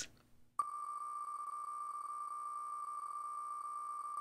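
Ticking sound of an online name-picker wheel spinning fast. The ticks come so quickly that they run together into a steady, high buzzing tone, starting sharply about half a second in.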